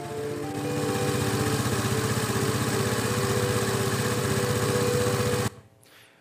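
Small motor scooter engine running steadily over soft background music, cutting off suddenly about five and a half seconds in.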